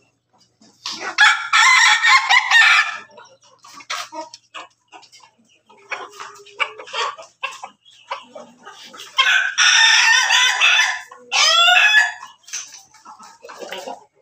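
Roosters of a pelung × bangkok × ketawa crossbred flock crowing: a long crow about a second in and another near the end in two parts. Hens cluck in between.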